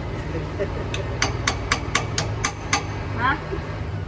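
A run of about eight sharp metallic clicks, about four a second, from a wrench turning a truck's drum-brake slack adjuster while the brakes are being adjusted.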